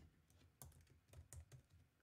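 Faint typing on a computer keyboard: a handful of scattered keystroke clicks.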